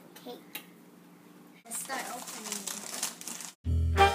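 Plastic food packaging crinkling as it is handled, with faint children's voices. Near the end, loud background music with a strong beat starts abruptly.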